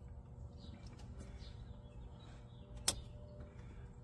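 Faint steady low hum, with one sharp click a little under three seconds in.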